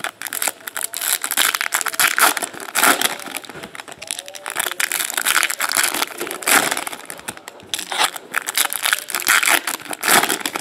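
Foil trading-card pack wrappers crinkling and crackling irregularly as hands tear them open and handle them.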